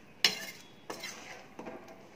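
Perforated steel ladle knocking and scraping against a metal kadai while stirring a thick gravy. It gives one sharp clink with a short ring about a quarter second in, then softer knocks around the middle and near the end.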